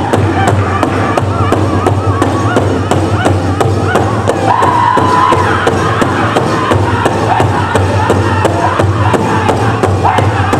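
Powwow drum group singing in unison over a steady, even beat struck together on one big drum. The high voices of the singers carry a long held note about halfway through.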